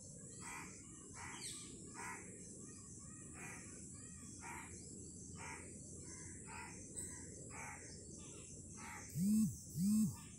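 A bird's short calls repeat about once a second over a steady high insect trill. Near the end come two short, loud low tones, each rising and then falling in pitch.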